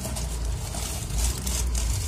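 Cardboard box opened and a plastic-wrapped flexible tripod slid out of it: faint rustling and scraping over a steady low rumble.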